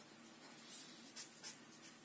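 Felt-tip marker writing on paper: a few faint, short strokes.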